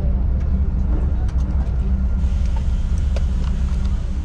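Coach bus engine idling at a stop, a steady low rumble heard from inside the passenger cabin, with scattered light clicks and knocks of passengers getting up.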